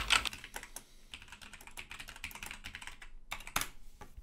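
Typing on a computer keyboard: a fast, continuous run of key clicks, with a couple of louder key strikes shortly before the end.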